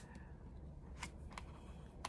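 Two faint clicks of fingers picking at a paper smiley-face sticker on a cardboard sticker-book page, about a second in and again shortly after, over quiet room tone.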